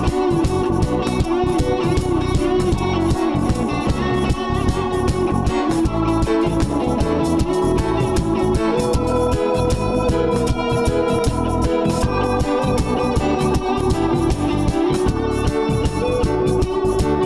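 A live band playing an instrumental passage: held keyboard chords over electric bass and drums keeping a steady beat.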